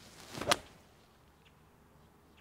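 Golf club swing: a short swish building up, then a sharp crack as the iron strikes the ball about half a second in.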